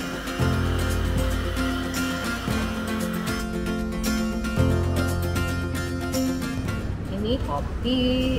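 Background music with sustained bass notes and a percussive beat. About seven seconds in, a woman's voice begins over it.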